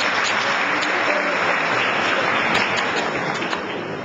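An audience applauding: a dense, steady patter of many hands clapping that eases off slightly near the end.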